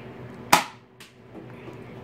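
A modded Nerf Zombie Strike Hammershot blaster firing a single foam dart: one sharp snap about half a second in, then a much fainter click half a second later.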